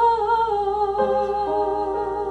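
A woman's voice holds one long wavering note over a digital piano, and new piano notes come in about a second in.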